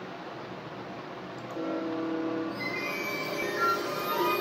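Cartoon subway-train sound effect played through computer speakers: a steady rumble, joined about one and a half seconds in by sustained tones that spread higher near the end as music comes in.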